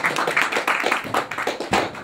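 Audience applauding: many hands clapping at once.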